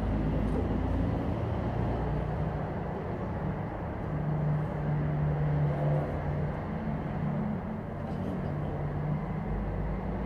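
Steady background noise of road traffic with a low engine hum that swells and fades over a few seconds. No violin is playing.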